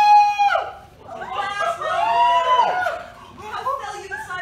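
Performers' voices crying out without words: a high, held cry at the start, then long cries that rise and fall in pitch.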